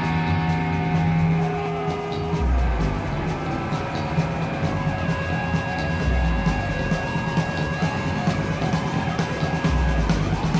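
Live rock band music played back from a concert recording: sustained distorted electric guitar over a drum kit, with heavy low hits every few seconds.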